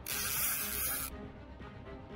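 Fishing reel's drag buzzing for about a second as a hooked catfish pulls line off, cutting off sharply; background music plays underneath.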